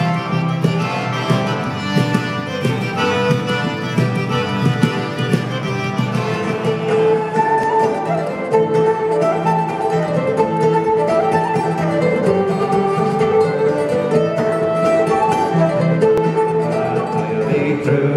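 Live Irish folk instrumental played by a small acoustic ensemble: fiddle carrying the melody over strummed acoustic guitar, with a steady low drone underneath.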